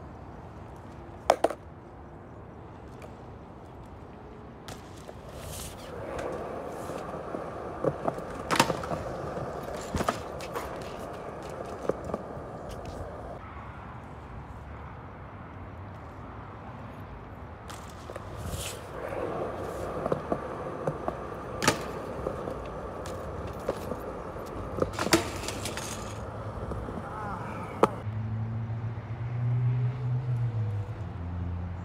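Skateboard wheels rolling on concrete in two long runs, one starting about six seconds in and one about eighteen seconds in, with sharp clacks of the board hitting the ground along the way.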